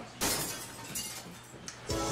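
A sudden crash-like noise about a quarter of a second in, fading away over about a second and a half, with a faint click near the end.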